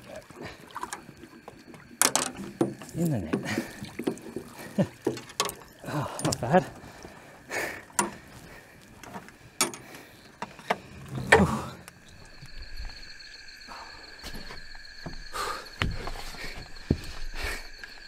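A large barramundi thrashing in a landing net at the side of a boat: irregular splashes and sharp knocks for about the first ten seconds. From about two-thirds of the way in, a steady high chirring chorus of night insects is heard.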